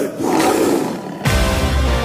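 A loud roar sound effect set in a film soundtrack, fading over about a second, after which the music comes back in with a heavy beat.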